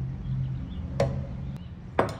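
A spoon knocking sharply against a plate and a blender jar while a bar of cream cheese is scraped into the jar. There are two knocks, one about a second in and one at the end.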